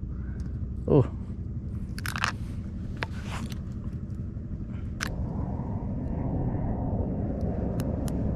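Steady low outdoor rumble with a few short clicks and rattles as fishing tackle is handled: a small snap, a lure box and a pair of fishing pliers.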